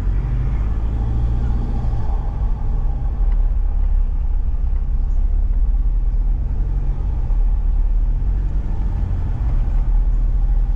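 Four-wheel drive's engine and tyres on a dirt road, heard from inside the cabin as a steady low rumble.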